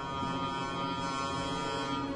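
Orchestra holding a dense, steady chord of many sustained notes, high and low together, in a contemporary classical symphonic poem.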